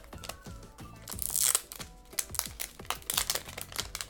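Thin plastic protective film crinkling and crackling as it is peeled off a smartphone, with a longer, louder peel about a second in.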